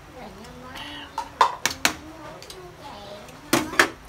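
Metal ladle clinking against an aluminium cooking pot as hotpot broth is scooped: a quick run of sharp clicks about a second in and two more near the end, with a faint murmured voice between them.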